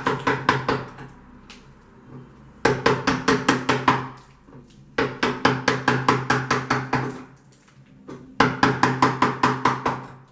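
Hammer tapping a chisel in quick runs of about six or seven blows a second, each run lasting one to two seconds with short pauses between, cutting hard putty out of a wooden window frame to free a stained glass window.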